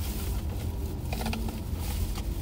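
Light clicks and rustling as a takeout food container is handled, over the steady low rumble of a car idling.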